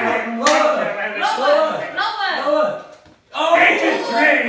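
Excited voices calling out, with one sharp slap about half a second in as a giant playing card is turned over against the wooden shelf.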